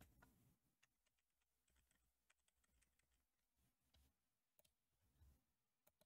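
Near silence: room tone with a few faint scattered clicks.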